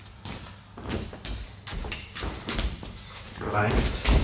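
Feet stepping in and shuffling on dojo training mats during a repeated shooting (penetration-step) drill, a run of short soft thuds and scuffs about every half second. A man's voice calls "Rein" near the end.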